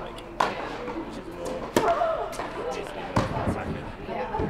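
Tennis ball struck by rackets and bouncing on an indoor court: three sharp pops about a second and a half apart, each ringing briefly in the hall.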